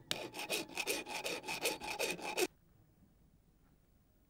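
Hand file rasping back and forth on a cast silver Tuareg cross, in a quick, even run of strokes. It cuts off suddenly about two and a half seconds in, leaving only faint background.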